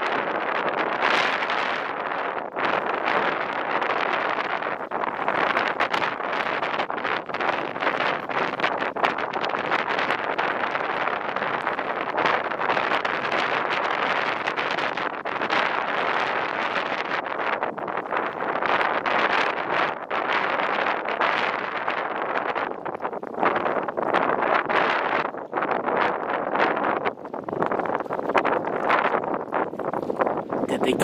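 Wind buffeting the microphone, a rushing noise that swells and drops in gusts every second or two.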